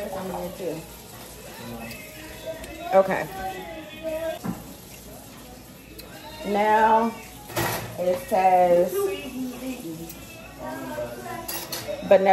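Dishes and kitchen utensils clinking and clattering, with a few sharp knocks, the loudest a little past halfway, amid people talking.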